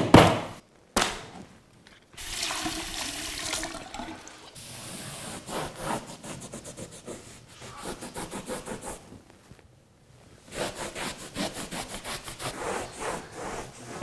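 Cloth rag rubbing old chalk-line marks off a painted wall. After a couple of sharp knocks at the start, the wiping goes in stretches of rubbing noise and ends in a run of quick back-and-forth strokes, several a second.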